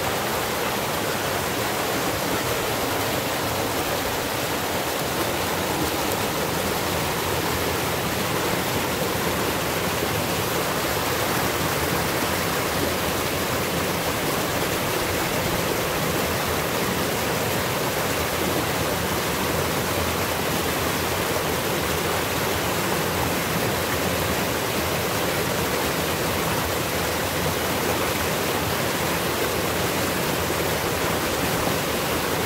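Mountain stream water rushing over rocks in small cascades: a steady, unbroken rush of water.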